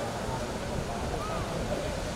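Indistinct voices of a gathered crowd over a steady low noise, like wind on the microphone.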